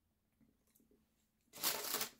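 Near silence, then about one and a half seconds in, a short rustle of a brown paper takeout bag being handled.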